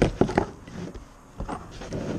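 Clear plastic bag crinkling as small metal pen-kit parts are taken out and set down on the table: a few sharp clicks early on, a quieter stretch, then more clicks about a second and a half in.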